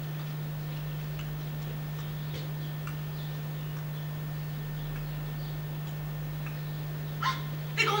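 A steady low hum with faint, scattered small ticks. Near the end comes a brief vocal sound.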